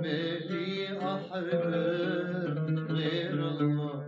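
A man singing a long-held, wordless vocal line of an old Arabic song over instrumental accompaniment.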